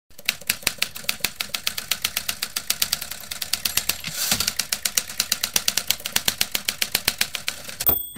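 Typewriter keys clacking in a fast, even run of about six or seven strokes a second, with a brief rush of noise about halfway through and a sharper, louder strike near the end.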